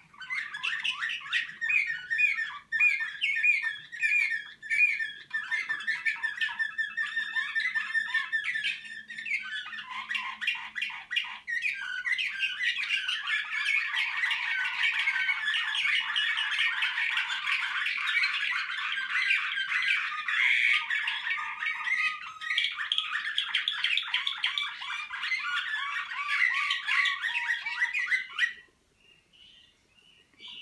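Caged slavujar canary singing one long, unbroken song. It opens with a series of repeated whistled notes, about two a second, runs into a fast even trill, then a dense, rapid, varied warble that stops suddenly near the end.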